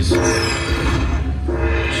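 Dragon Link slot machine playing its win count-up music as the win meter tallies the bonus payout: sustained chords over a low drone, with a high falling sweep just after the start and a fresh chord about one and a half seconds in.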